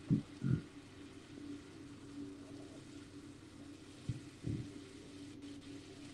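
Faint steady low hum with a few soft, low thumps, two near the start and two about four seconds in.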